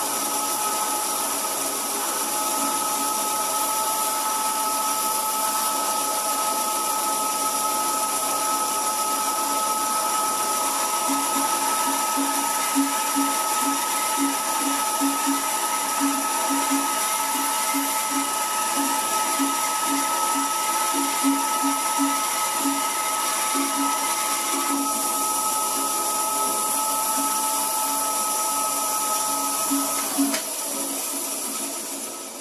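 Record Power BS250 bandsaw running with a steady whine, cutting small balsa wedges on its tilted table. From about a third of the way in, short irregular low pulses sound over the whine as the pieces are fed through the blade.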